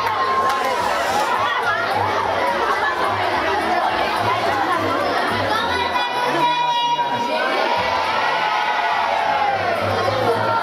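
A crowd of children shouting and chattering all at once, many high voices overlapping loudly and without a break.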